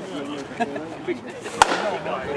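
A bat hitting a pitched ball solidly in batting practice: a single sharp crack about one and a half seconds in, with a short ring after it.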